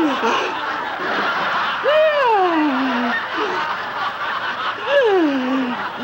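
Audience laughter runs throughout, while a man's voice lets out long cries that slide down in pitch, twice.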